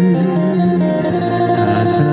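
Song music in an instrumental passage led by guitar, with held chords and no singing.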